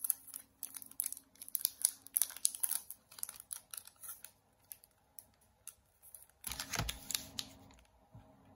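Crackling and clicking of a plastic sleeve around a bundle of paper banknotes as it is handled and turned. Near the end comes a louder, duller knock as the bundle is laid down on the table.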